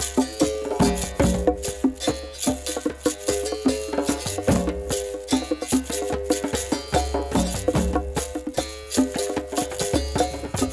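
Percussion-driven background music: a fast, steady rhythm of sharp strikes over repeated pitched notes.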